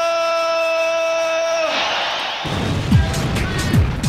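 A man's voice holds a long, drawn-out "rumble" on one steady pitch, in the style of a boxing ring announcer, and stops a little under two seconds in. A burst of crowd cheering follows, then a hip-hop beat starts with deep bass kicks that fall in pitch.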